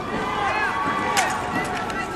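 A single sharp slap of a drill rifle striking the performer's hands about a second in, over a steady murmur of onlookers' voices.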